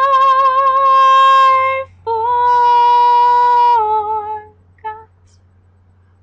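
A woman singing a cappella, holding two long notes with a slight vibrato, then stepping down in pitch and giving one short note before falling silent near the end.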